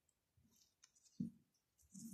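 Near silence with a few faint, sparse clicks and one short soft sound a little over a second in.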